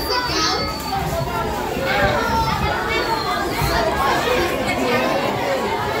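A group of children talking and calling out at once, many voices overlapping.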